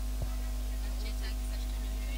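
Steady low electrical mains hum from a microphone and PA system, with one short soft knock about a quarter of a second in.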